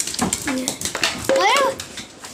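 A dog whining in short high cries as it is offered food, mixed with a person's voice.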